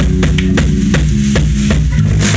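Rock band playing loud, as heard live in the club: a drum kit beating fast and steady, about four to five hits a second, over bass and electric guitar.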